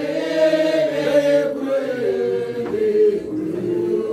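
A group of voices chanting together, several held notes layered at once and shifting slowly in pitch.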